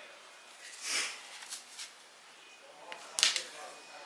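Hands rustling through gelled hair as it is gathered and twisted into a bun: two short rustling bursts, one about a second in and a louder one near the end, with faint ticks between.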